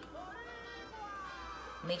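A cat meowing once: a single drawn-out call that rises and then falls in pitch over about a second and a half.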